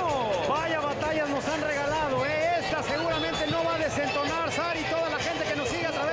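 A man's voice talking continuously: boxing commentary in Spanish, with music faintly underneath.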